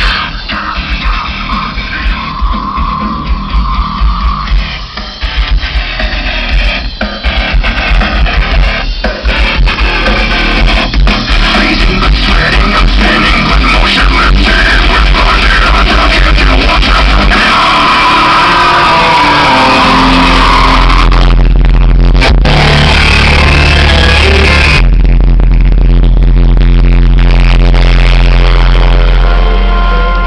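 Loud rock music playing through a pickup truck's Alpine car audio system with the door open. Deep bass notes come in about two-thirds of the way through.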